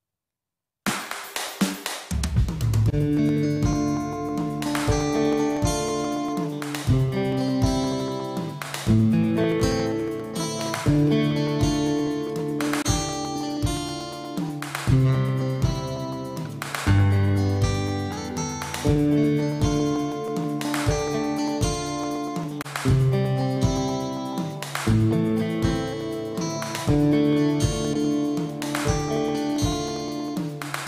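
Acoustic-electric guitar playing an instrumental song intro that starts suddenly about a second in, picked notes over a steady pulse of sharp hits about once a second.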